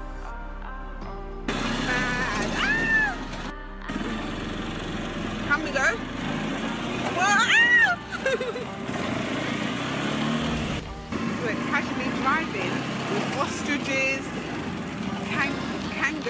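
Quad bike (ATV) engine running as it rides along a dirt track, with voices calling out over the engine noise. Electronic music plays for about the first second and a half, and the sound breaks off briefly twice.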